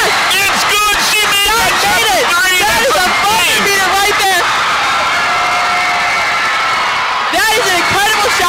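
Gymnasium crowd and players screaming and cheering at a game-winning buzzer-beater three-pointer, with many high-pitched shrieks and whoops, and some held screams from about halfway in.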